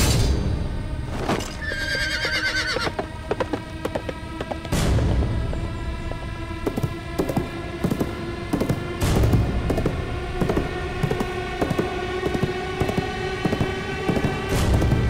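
Film soundtrack of horses: a sharp hit at the start, a horse whinny about two seconds in, then a run of galloping hoofbeats over sustained dramatic music.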